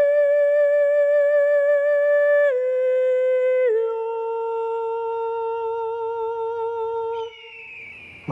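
A single high voice singing solo in long held notes with vibrato, stepping down in pitch twice and ending near the end.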